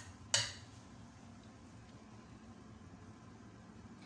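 A single sharp clink of a metal kitchen utensil, about a third of a second in, then a faint steady low hum of room noise.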